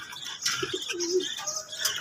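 Domestic pigeon cooing softly: a few short low notes, then a longer drawn-out coo about a second in.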